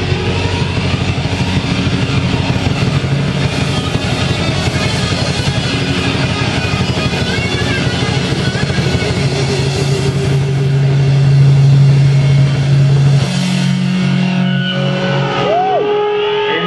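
Live rock band playing loud, heavily distorted electric guitars with drums and cymbals in a dense wall of sound. About 13 seconds in, the band lands on a held low chord that rings on and thins out near the end.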